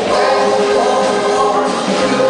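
Doo-wop vocal group singing sustained close harmony live, backed by a band with drums and bass guitar.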